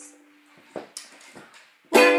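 The last note of a sung ukulele phrase fades out, then a quiet pause with a few faint small noises, and loud ukulele playing comes in again right at the end.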